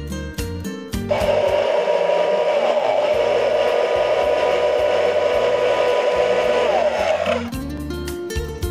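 Electric hand (immersion) blender running in a tall plastic beaker, blending orange juice and coconut water into a frothy drink. It starts about a second in, runs at a steady whir for about six seconds, and stops shortly before the end.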